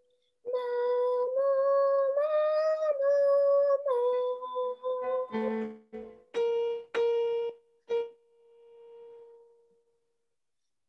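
A high voice sings a short warm-up scale on held vowel notes, stepping up and back down, followed by a few struck piano notes, the last one ringing and fading out.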